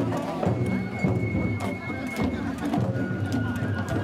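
Mikoshi bearers chanting in rhythm while carrying a portable shrine, over festival music with sharp rhythmic clacks. A long high steady tone sounds about a second in, and another near the end.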